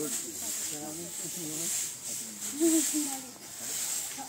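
Several people talking in the background, their words indistinct, over a steady high-pitched hiss that swells and fades.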